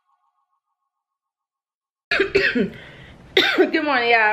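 Dead silence for about two seconds after background music has faded out, then a woman's voice starts abruptly about halfway through and carries on with shifting pitch.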